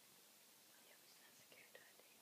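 Near silence: quiet room tone with a few faint, brief high-pitched sounds and small ticks around the middle.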